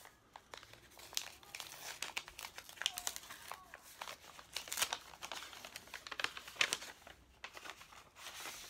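A mail envelope being torn open and its paper crinkled by hand: irregular crackling and tearing with many small sharp rustles.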